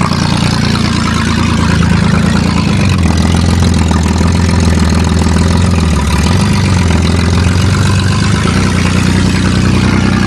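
Loud engine of a 1994 Chevrolet Cavalier as the car drives past. Its note drops lower about three seconds in and rises again about six seconds in.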